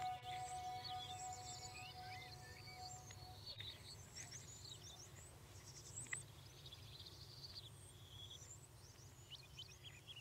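A held musical note dies away over the first three seconds. Many small birds chirp and twitter throughout in quick, gliding calls, over a faint low steady hum of outdoor ambience.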